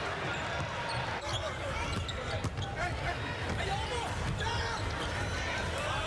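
Arena sound of a basketball game: a ball bouncing on the hardwood court with scattered thuds over the continuous chatter and noise of the crowd.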